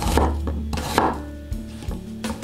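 Cleaver-style kitchen knife chopping a peeled onion on a bamboo cutting board: a few separate cuts, each ending in a knock of the blade on the board, the loudest about a second in.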